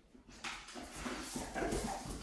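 A large dog pawing and nosing at a ball on a wooden floor, its claws scrabbling and clicking on the boards in an irregular run of scrapes and knocks that starts about half a second in and grows louder.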